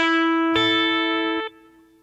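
Clean electric guitar, a Telecaster-style solid-body, playing two single notes: the 5th fret on the B string (E), then about half a second later the 5th fret on the high E string (A). The two notes ring together until they are damped about a second and a half in, leaving a faint ring.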